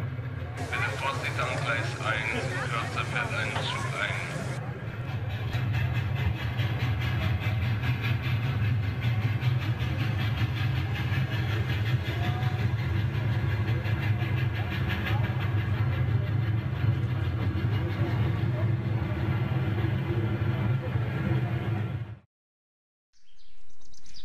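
Model railway layout's built-in sound system playing a busy-station soundscape: crowd chatter over a steady low train rumble, with a burst of higher, noisier sound for about four seconds near the start. It cuts out suddenly near the end, and birdsong with rising chirps follows.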